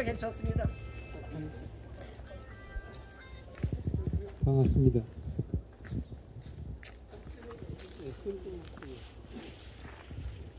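Faint music and scattered voices, with steady held tones near the start and again about three seconds in. One voice sounds loud and brief about four and a half seconds in.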